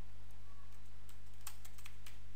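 Computer keyboard keystrokes: a few faint key clicks about half a second in and a quick run of them near the end, over a steady low electrical hum.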